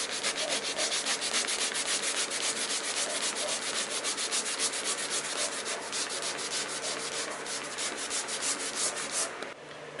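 Hand scrubbing back and forth on a textured painted wall, rubbing off a child's writing, at about five strokes a second. It stops shortly before the end.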